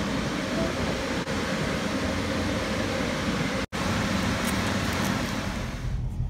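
Steady rushing noise with a low rumble, broken by a brief dropout about two-thirds of the way through.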